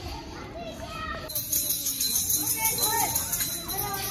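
Children's voices chattering and calling out. About a second in, a bright high-pitched hissing jingle joins them.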